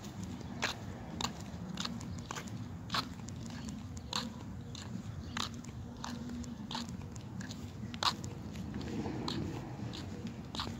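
Footsteps on a concrete sidewalk: sharp, crisp shoe clicks at an even walking pace of about one and a half steps a second.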